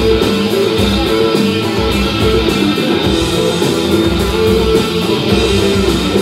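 Live rock band playing: electric guitar over drums, with sustained notes and a deep pulse about once a second.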